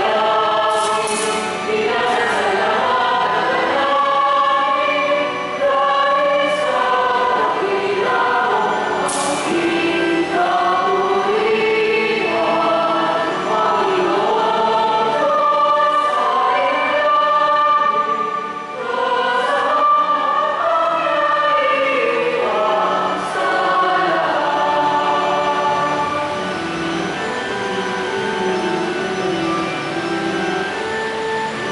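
A choir singing a hymn in long held notes that move from one to the next.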